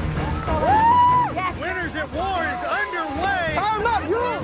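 Several people shouting and cheering encouragement at once, overlapping yells with one long held shout about a second in, over background music.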